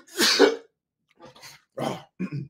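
A man coughing: a loud cough about a quarter of a second in, then two weaker coughs or throat-clearings later on.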